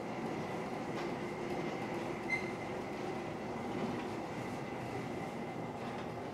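Loaded hand pallet jack rolling over a polished stone floor: a steady rumble from its wheels under the heavy marble load, with a faint high squeal and one short click about two seconds in.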